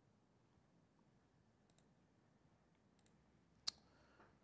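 Near silence with a few faint clicks from a laptop being operated, and one sharper, louder click near the end.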